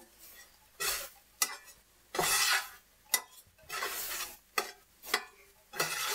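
Spatula stirring and scraping scrambled eggs around a Stargazer cast iron skillet: a series of irregular scrapes, a few longer than the rest, with sharp clicks between them.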